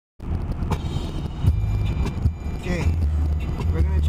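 Car cabin noise while driving: a steady low road-and-engine rumble, with a few light knocks in the first half.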